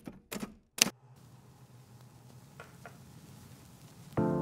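Three sharp clicks within the first second. Then faint room tone with two light clinks near the end, as a glass full of ice is touched.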